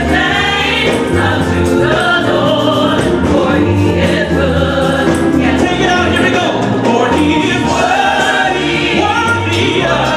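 Gospel praise team singing live through microphones: a male lead vocalist with a robed backing choir, sung continuously over sustained low accompaniment notes.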